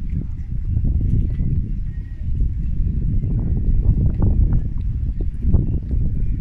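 Wind buffeting the microphone beside open water: a loud, gusting low rumble with scattered knocks.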